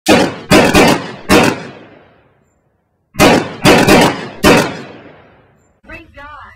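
Intro sound effect of heavy impact hits: two groups of four loud, sharp hits about three seconds apart, each hit ringing out in a long echoing tail.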